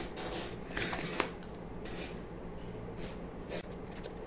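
A bottle of chalk paint being handled and opened: a few light clicks and knocks as the screw cap is twisted off and set down on the table.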